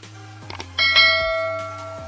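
Notification-bell chime sound effect from a subscribe animation: a short click, then a bright ding about a second in that rings and slowly fades, over a low steady music bed.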